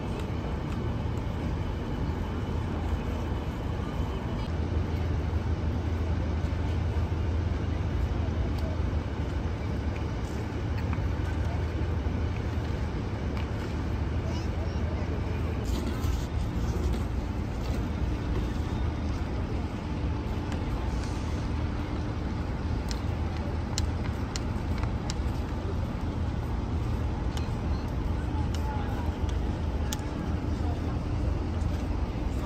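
Outdoor city night ambience: a steady low rumble, like traffic, with faint voices and a few light ticks.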